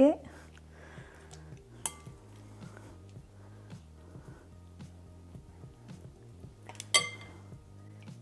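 Chopsticks clinking against a glass mixing bowl while dumpling filling is scooped onto a wrapper: a sharp tap a little under two seconds in and a louder, ringing clink near the end, over soft background music.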